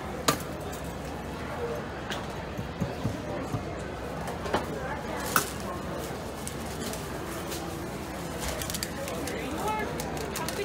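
Metal scoop knocking and scraping in a stainless steel tray of crunchy topping, a few sharp clicks spread over several seconds, over the murmur of voices in the shop.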